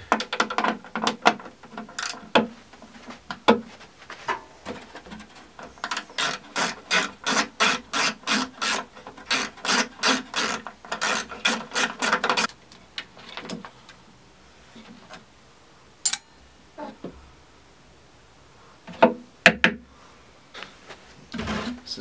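Hand ratchet working loose small imperial bolts on sheet-metal fixings. It clicks in quick, even strokes, about three a second, for several seconds, and is then followed by a couple of loud knocks near the end.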